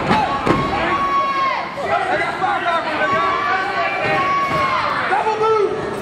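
Spectators at a wrestling match shouting and yelling, with a couple of long drawn-out calls rising above the other voices.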